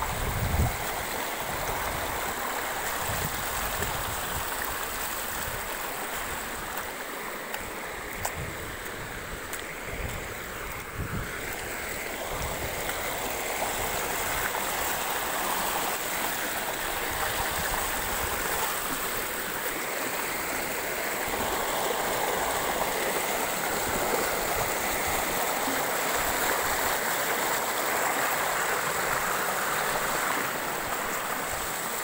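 Shallow river water running over rock ledges and through small riffles: a steady, continuous rush.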